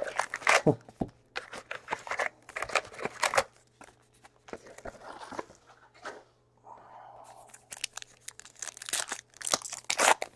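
Packaging of a baseball trading-card box and its foil packs being crinkled and torn open by hand, in bursts of short rustles and rips with brief lulls about four and six seconds in.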